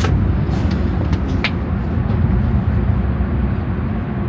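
Steady low rumble of car wash tunnel machinery heard from inside a car, with a few sharp clicks in the first second and a half.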